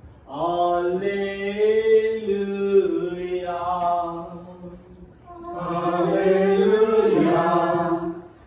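A man's voice singing the Gospel Acclamation alleluia as a slow chant with long held notes. It breaks off briefly a little past halfway and then resumes.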